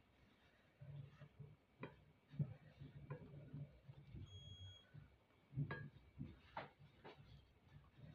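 Near silence with a few faint soft knocks and rubbing as coconut-filled dough is rolled up by hand on the work surface. A brief faint high beep sounds about four and a half seconds in.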